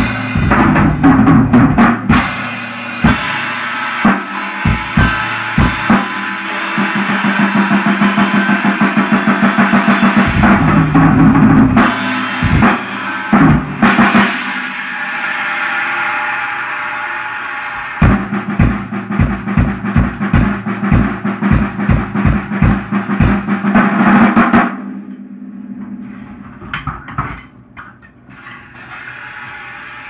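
Acoustic drum kit with Zildjian cymbals played hard: kick, snare, toms and cymbals, including a fast run of even strokes. The playing stops about 25 seconds in, followed by a few quieter scattered hits.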